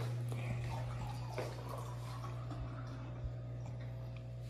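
Quiet kitchen sounds: a steady low hum with a few faint knocks and clinks as a small aluminium pot is handled at a gas stove.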